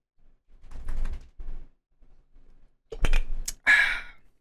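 A drink being sipped, then set down on a desk: quiet handling noise early on, then sharp knocks and clicks about three seconds in, followed by a short breathy exhale.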